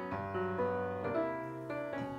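Grand piano playing a run of struck chords and notes, each ringing on as the next one comes in every few tenths of a second.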